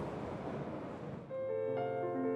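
A soft hiss fading away, then a little over a second in, a Steinway grand piano starts playing, several notes sounding together and ringing on.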